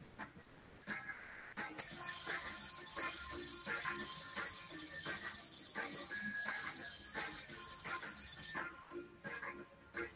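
Cartoon alarm-clock bell ringing steadily for about seven seconds. It starts about two seconds in and cuts off shortly before the end, with light background music under it.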